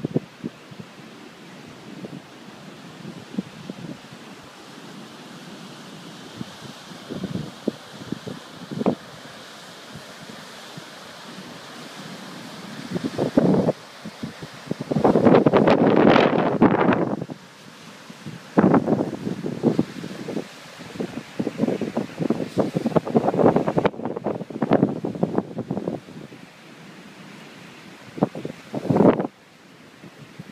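Wind buffeting the microphone in irregular gusts, loudest about halfway through, over the steady wash of surf breaking on a sandy beach.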